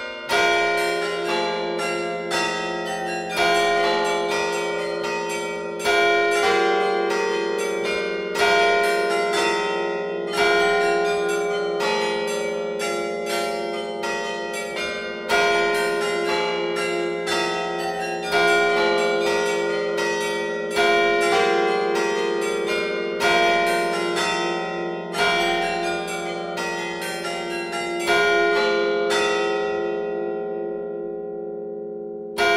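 Carillon bells playing a programmed tune from the automatic player: a quick succession of struck bell notes over long ringing tones, with a heavier stroke every two to three seconds.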